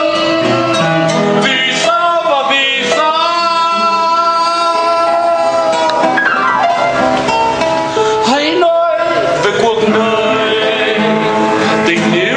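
A man singing a slow song with instrumental accompaniment, holding a long note near the middle.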